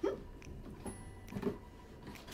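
Faint rustles and light taps of a rolled paper letter being handled on top of a cardboard box, a few small sounds about half a second and a second and a half in.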